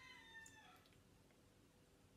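A faint, high-pitched animal call, drawn out and falling slightly in pitch as it fades in the first second, then faint room tone.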